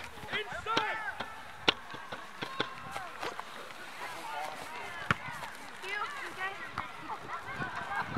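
Scattered voices of players and spectators calling across an open soccer field, with two sharp knocks, one about two seconds in and one about five seconds in.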